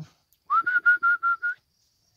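A person whistling a quick run of about six short notes on one pitch, lasting about a second: a call to get the Šarplaninac puppies to look up.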